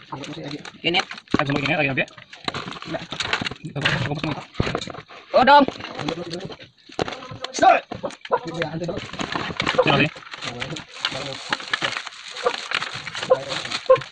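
People talking throughout, with scattered light clicks and knocks as live crabs are handled and scrubbed clean in a metal basin.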